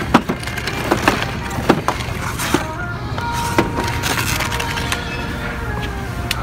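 Sharp, irregular clicks and crinkles of plastic toy packaging and blind-bag packets being pushed aside on store peg hooks, over a steady background hum.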